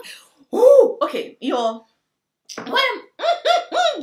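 A woman's excited, wordless cheering and squealing: a burst of high calls, a short pause, then a quick run of repeated whoops.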